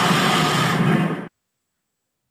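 Toy transformation-belt finisher sound effect for the Kamakiri Vistamp's Stamping Finish: a dense, noisy blast that cuts off suddenly a little over a second in, leaving silence.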